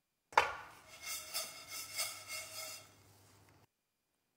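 A nonstick frying pan of dry vermicelli being worked on a gas hob while the vermicelli toasts. A sharp knock comes near the start, then the strands rub and scrape against the pan in uneven surges for about three seconds before fading.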